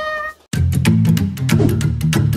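A woman's drawn-out excited scream ends just after the start. About half a second in, upbeat background music starts, with a quick, sharp beat over a bass line.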